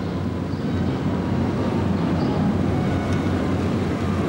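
Small car's engine running as the car drives up and approaches, a steady low rumble growing slightly louder.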